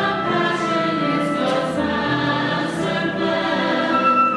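Mixed church choir singing a sustained anthem in parts, with a flute playing along.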